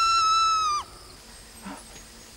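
A person's long, high-pitched scream, held at one pitch, falling away and cutting off a little under a second in.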